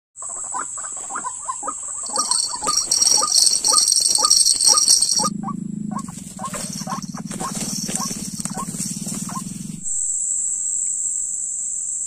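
White-breasted waterhen calling, one short note repeated two to three times a second, over a steady high insect drone. A low steady hum joins about five seconds in and stops near ten seconds, leaving only the insect drone.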